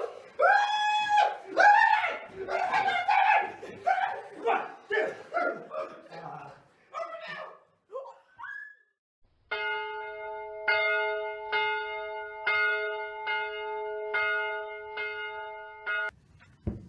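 A person's loud, high, drawn-out cries, repeated and getting shorter and fainter until they die away about halfway through. Then comes a sustained bell-like music chord, struck again about once a second.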